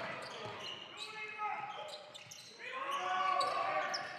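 Live court sound of a basketball game in a large sports hall: a ball being dribbled and faint voices of players and spectators shouting in the hall, louder again near the end.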